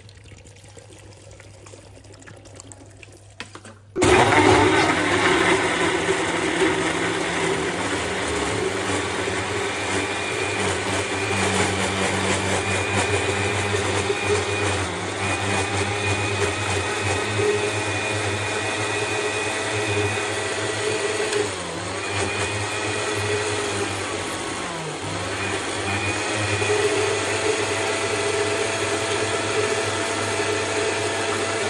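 Countertop electric blender switching on about four seconds in and running steadily, blending peach chunks and water into juice. Its motor note dips briefly twice in the second half as the load shifts.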